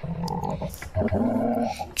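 A lion growling twice, each growl about a second long and low-pitched.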